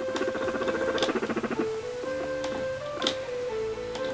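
Guinea pig making a rapid pulsing purr-like call while being stroked, lasting about a second and a half before stopping, a sign that she is very wary. Background music plays throughout.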